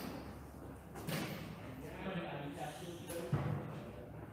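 Indistinct voices talking, with two sharp knocks: one about a second in and a louder one near the end.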